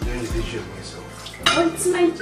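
Dishes and cutlery clattering in a kitchen sink, with one sharp clatter about one and a half seconds in.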